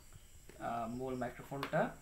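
A man's voice speaking briefly after a short quiet pause in a small room.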